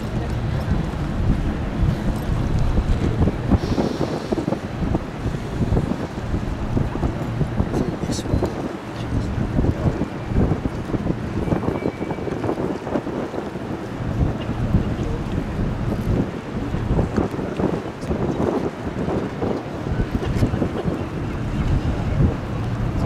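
Wind buffeting the microphone in gusts, a rough low rumble over river water and tugboat engines.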